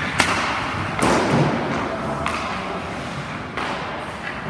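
Hockey pucks and sticks knocking on the ice rink: a sharp hit just after the start and a louder one about a second in that rings on in the rink, then lighter knocks.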